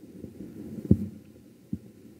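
Two dull low thumps as hands come down onto a wooden pulpit, a loud one about a second in and a fainter one near the end, over a faint rustle.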